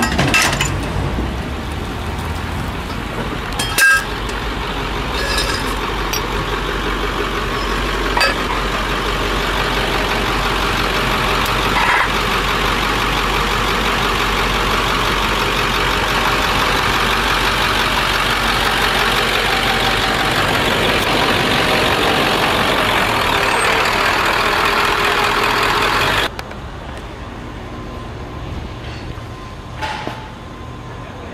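Tow truck running steadily at close range, with a few sharp metallic knocks in the first dozen seconds. The noise cuts off suddenly near the end.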